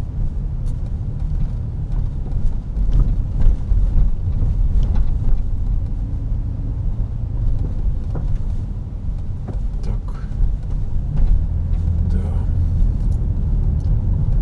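Road noise inside a moving car's cabin: a steady low rumble of engine and tyres on city streets, with a few faint knocks from bumps in the road.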